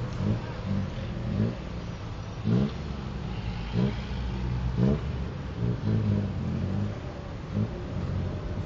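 Tuk-tuk's small engine running in traffic, revved up in short rising pulls about half a dozen times, with road noise heard from inside the open-sided cab.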